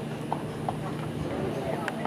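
Hooves of two horses walking on a dirt racetrack, a racehorse and the pony horse leading it, with a few sharp hoof strikes over indistinct voices.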